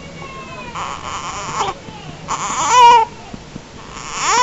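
Four-week-old newborn fussing: a faint, thin whimper about a second in, then a short, louder cry with a wavering pitch near the three-second mark.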